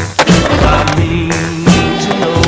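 Skateboard grinding down a metal handrail, then landing on concrete with a sharp clack about a second and a half in, under a music track.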